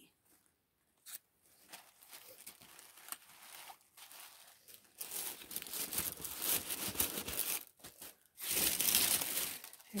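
Tissue paper and a clear cellophane gift bag rustling and crinkling as a gift is tucked into a cardboard box and the tissue is folded over it. It starts faint, grows louder about halfway through, and is loudest for about a second near the end.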